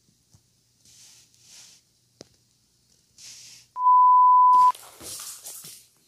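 A steady, high electronic beep of about one second, starting a little before the middle: the loudest sound here. Before and after it come short, faint scuffling noises as a small Maltese dog plays with a rubber ball.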